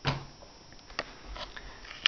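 Quiet room with a few faint handling clicks, one right at the start and another about a second in.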